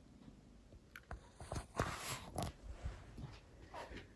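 Quiet handling noises of a heavy woven wall hanging being moved: soft rustles and small knocks, with a few sharper clicks around two seconds in.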